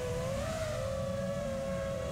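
NewBeeDrone Smoov 2306 1750kv brushless motors and props of an FPV quadcopter in flight, giving a steady high whine of two close tones. The pitch lifts slightly about half a second in, then holds.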